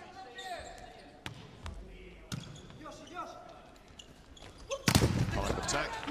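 Volleyball bounced a few times on the court floor before the serve, under faint arena crowd voices. About five seconds in comes a sharp, loud smack of the ball being struck, followed by crowd noise.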